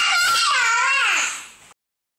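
A young girl squealing with laughter in a high-pitched voice. The squeal slides down in pitch and stops abruptly near the end.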